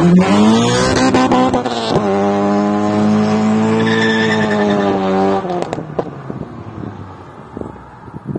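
Honda Prelude's H22 four-cylinder VTEC engine revving hard as the car accelerates away. Its pitch climbs steeply, drops at a gear change about two seconds in, then rises again more slowly and fades as the car moves off into the distance.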